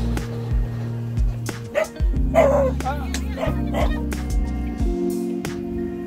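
Background music with held notes and a steady low beat. A dog barks or yips a few times in the middle.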